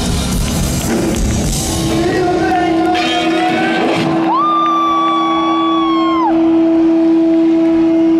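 Live rock band with drums and electric guitars playing, then the drums stop about four seconds in. A steady guitar note rings on, and a long high note is held for about two seconds, bending up at the start and sliding down as it ends.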